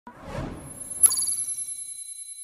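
A swelling whoosh, then about a second in a sharp, bright chime that rings on in several high tones and slowly fades: an editing sound effect accompanying an on-screen title card.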